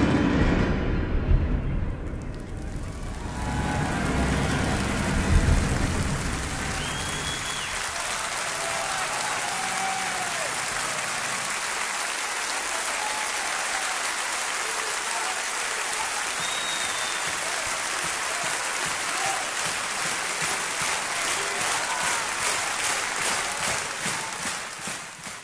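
The orchestra's final drum-backed chords die away in the first few seconds, giving way to a large concert audience applauding. Short shouts or whistles rise out of the clapping, which falls into a regular beat near the end.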